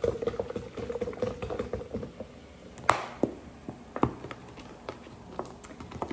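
Sprite pouring from a plastic bottle into a plastic pitcher. The stream runs for about a second and a half, then the soda fizzes and crackles as the foam settles, with a couple of sharper clicks around the middle.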